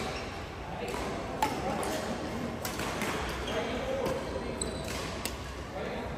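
Badminton rackets striking a shuttlecock during rallies, a string of sharp cracks roughly once a second, the loudest about one and a half seconds in. They echo in a large sports hall over background voices.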